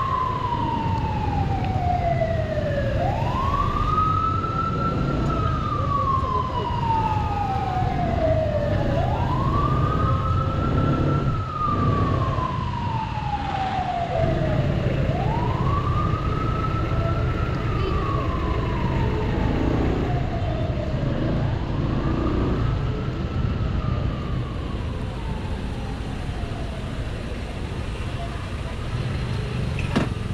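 A wailing siren that sweeps up quickly and then falls slowly, about once every six seconds, growing fainter near the end. Beneath it is the steady low running of a Honda ADV 150 scooter's single-cylinder engine.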